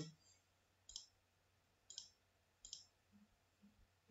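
Three faint computer mouse clicks, about a second apart, as pieces are moved on an on-screen chessboard, against near silence.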